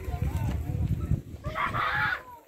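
A rooster crowing once, loud, near the end, with wind buffeting the microphone before it.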